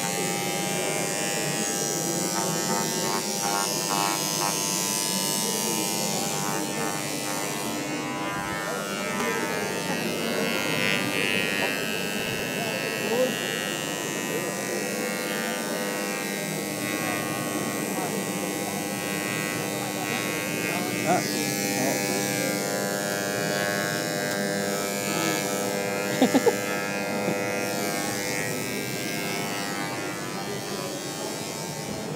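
Hand-held electric engraving tool buzzing steadily as it cuts into an acrylic sheet, with voices in the background and a quick few taps near the end.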